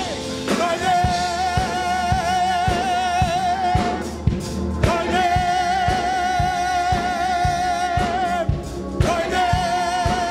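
Gospel choir singing long held notes with vibrato over a band keeping a steady beat of about two strikes a second. The voices drop out briefly about four seconds in and again just before the end.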